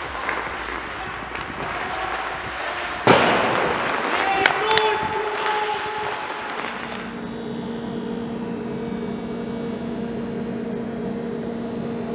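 Ice hockey practice: skates scraping across the ice, a sharp crack of a stick shot about three seconds in, and a second hit a moment later that leaves a ringing metallic tone for about two seconds. From about seven seconds in, a steady motor hum takes over, from a skate-sharpening grinder.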